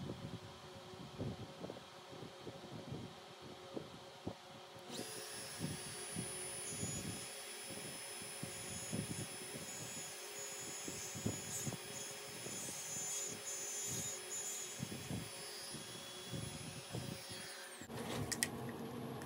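Compact trim router running on the ash tabletop. Its high motor whine comes in about five seconds in and winds down just before the end. Under it is a lower steady hum with scattered knocks.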